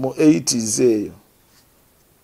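A man's voice speaking for about a second, then quiet.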